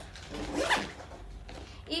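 Zipper on an EQ camera backpack being pulled shut in one quick stroke about half a second in.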